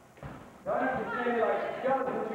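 A voice calling out during sparring, starting about two-thirds of a second in, after a soft low thud near the start.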